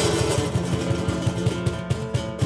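Steel-string acoustic guitar strummed in a quick, even rhythm, with a cajón struck by hand alongside it; an instrumental passage with no singing.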